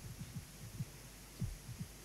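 Handling noise from a handheld microphone as it is lowered: a handful of dull, irregular low thumps and rubs over a faint steady hum, the loudest about one and a half seconds in.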